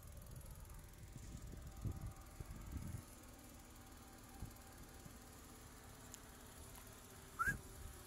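Low rumble of wind and handling on a phone's microphone, with two bumps in the first few seconds as the phone is turned around. Near the end comes a short, high chirp that glides in pitch.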